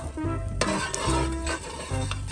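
A metal ladle stirring and scraping in a steel pan set over a wood fire, with scattered light clinks against the pan.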